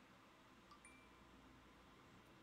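Near silence, with one faint, short chime about a second in: the iPhone's App Store purchase-confirmation tone as the app download is approved.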